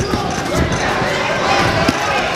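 Boxing gloves landing punches: a few dull thuds, one right at the start, two a little over half a second in and one near the end, over a bed of shouting voices.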